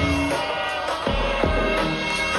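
Live hip-hop music played loud through a concert sound system and picked up by a phone in the crowd: a beat with sustained synth-like notes and deep bass, without vocals.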